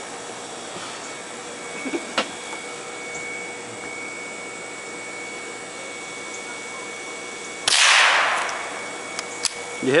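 A single .22 gunshot about three-quarters of the way through, sharp at first, then about a second of echo dying away. A light click comes about two seconds in.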